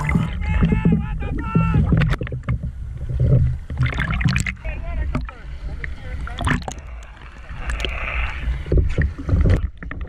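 Sea water sloshing and splashing around a camera at the surface beside a boat's stern, with voices from the boat and several sharp knocks as the catch and gear come aboard.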